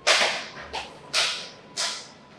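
Four sharp, hissy lash-like cracks at an uneven pace, each fading away quickly, like strikes of a whip or belt.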